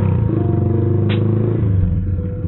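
Z200X motorcycle with an open exhaust pipe running at low revs in traffic, its exhaust pulsing steadily; the note shifts slightly about one and a half seconds in.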